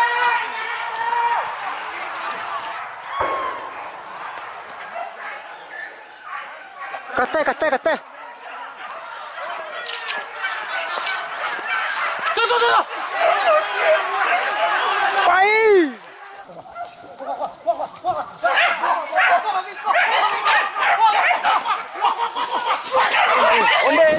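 Hunting dogs barking and yelping, with people calling out over them.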